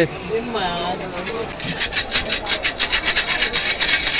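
Small wooden fortune-slip drawer being pulled open, wood rasping on wood in quick, juddering strokes from about a second and a half in.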